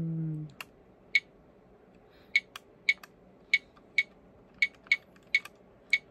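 A handheld camcorder's controls being pressed: about ten short, sharp beep-clicks at irregular intervals as its screen is stepped through menus and into record mode. A hummed note ends about half a second in.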